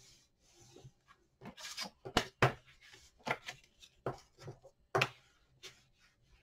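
A bone folder burnishing paper down against the edge of a chipboard piece: about ten short, irregular scraping strokes.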